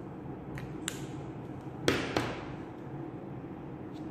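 A couple of faint clicks, then two sharp knocks about a third of a second apart near the middle, the loudest sounds here: pens being set down and picked up on a hard tabletop. A steady low hum runs underneath.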